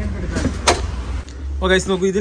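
A single sharp click or knock about two-thirds of a second in, over a low steady rumble, as a wooden panel inside a motorhome is handled; a man starts talking near the end.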